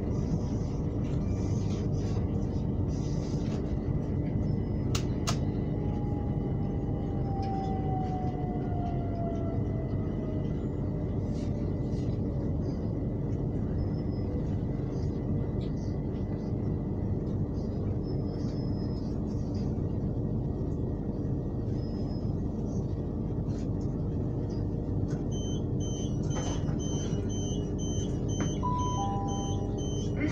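Electric suburban train rumbling as it slows to a stop at a station, with a falling whine from the traction motors in the first half. Near the end a rapid run of high beeps, typical of the door-release warning at the platform, and a two-note falling chime.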